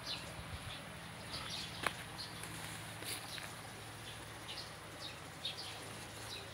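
Small birds chirping: short, scattered high calls over a steady low hum, with a single sharp click about two seconds in.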